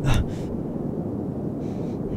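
A person's sharp gasp for breath right at the start, then a steady low rumble underneath.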